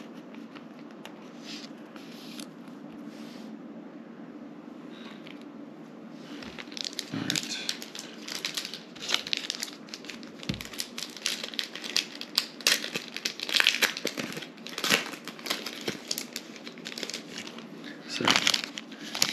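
Soft handling of a trading card and its plastic sleeve for about six seconds, then a dense, continuous crinkling and crackling of a plastic trading-card pack wrapper being handled.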